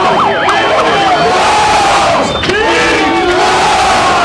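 A large crowd of rioters yelling and shouting at once, many voices overlapping, loud and continuous.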